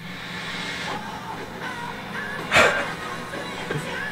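Movie trailer soundtrack playing: music with one loud hit about two and a half seconds in.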